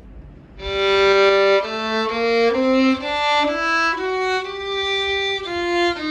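Solo violin bowing a one-octave G melodic minor scale starting on the open G string: a long first note, then even steps up to a held top G, starting back down in the descending form about a second before the end.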